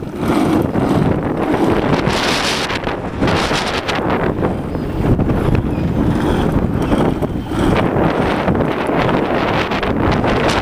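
Strong gusty wind buffeting the microphone: a loud, continuous low rumble that swells and dips with the gusts.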